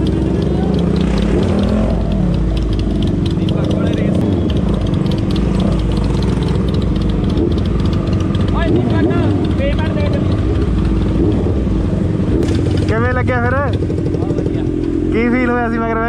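Motorcycle engines running at low road speed: the Honda CBR650R's inline-four under the rider, with a Harley-Davidson 883's V-twin riding alongside. Short bursts of voices in the second half.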